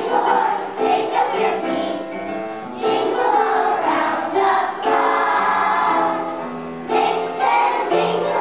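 A kindergarten children's choir singing together, the song moving in phrases of about two seconds each.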